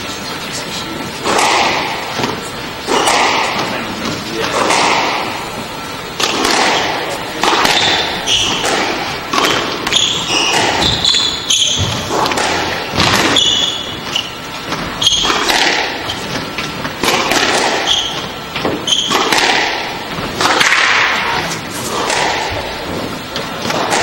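Squash rally: the ball struck by rackets and hitting the court walls, sharp echoing knocks every second or two, with short high squeaks of shoes on the hardwood floor in the middle of the rally.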